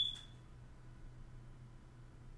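A single short, high-pitched electronic beep at the very start, fading away within half a second, over a faint steady low hum.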